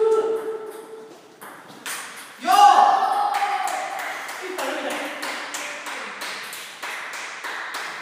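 Table tennis ball clicking sharply off paddles and table in a rally. About two and a half seconds in there is a loud shout, the loudest sound here, followed by scattered fainter ball clicks from other tables in the hall.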